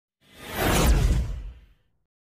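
A whoosh sound effect: a single swelling rush of noise with a deep low rumble that builds up, peaks about a second in, and fades away before the end.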